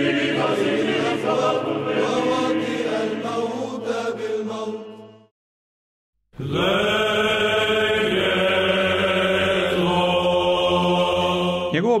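Chanted vocal music of long held notes. It breaks off about five seconds in for roughly a second of silence, then resumes.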